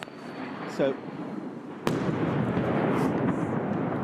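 A missile detonation: a single sharp blast a little under two seconds in, followed by a loud, sustained rolling rumble. Before it, a rising noise.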